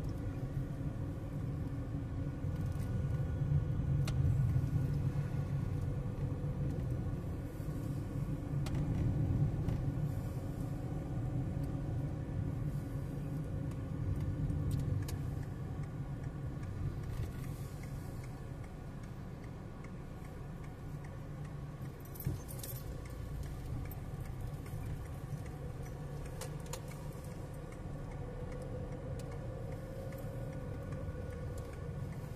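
Car cabin noise while driving: a steady low engine and tyre rumble, rising and falling gently with speed, with a few light clicks or rattles inside the car and one sharper knock about 22 seconds in.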